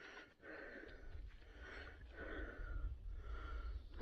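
A man breathing heavily, about four breaths in a row, close to the microphone.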